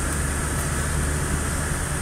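Cabin noise of a Toyota Camry being driven: a steady low engine and road rumble under an even hiss of tyre and wind noise.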